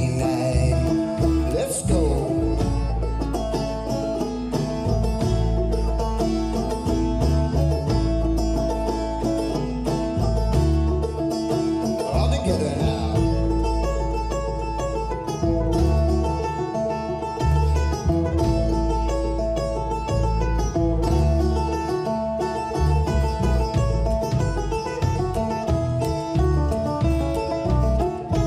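Live instrumental break: a banjo picking a quick run of plucked notes over an upright double bass, plucked by hand, keeping a steady low bass line.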